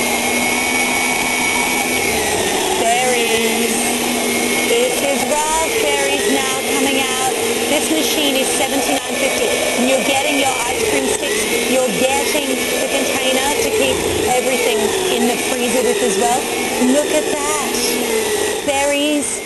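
Yonanas frozen treat maker's motor running steadily as frozen banana and strawberries are pressed down the chute with the plunger and ground into soft serve. Its pitch dips a few times as the fruit is pushed through.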